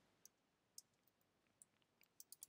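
Near silence with a few faint computer keyboard keystrokes.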